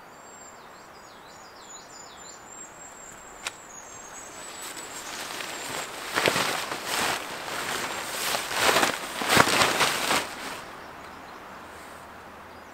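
Small birds chirping and whistling for the first few seconds. Then a camping tarp is handled and shaken out, giving a run of loud rustling swishes that grow stronger and cut off shortly before the end.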